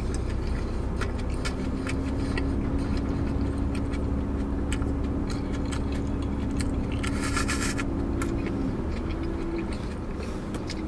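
Steady low engine hum heard inside a car's cabin, with small clicks of chewing and crinkling foil over it and a brief rustle about seven seconds in.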